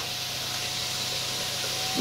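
Food frying in hot oil in a wok on a gas stove, a steady sizzle.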